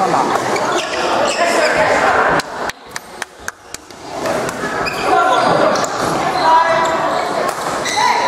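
Badminton rally in a large hall: sharp knocks of rackets striking the shuttlecock and shoes on the court floor, over a steady crowd chatter. The chatter drops for about a second and a half in the middle, where about five quick knocks stand out.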